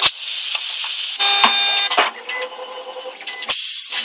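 Fully automatic coaxial cable stripping machine cycling: loud bursts of air hiss with sharp clicks, the first lasting about a second, a short one about two seconds in and another near the end. A quieter stretch with a steady whine lies between them.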